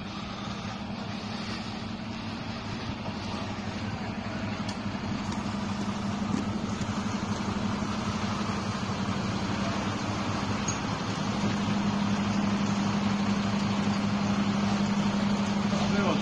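Diesel engines of parked fire engines running steadily, a deep hum that grows louder toward the end.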